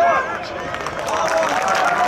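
Footballers' shouts on the pitch during play, loudest right at the start, mixed with short knocks and the general noise of a sparsely filled stadium.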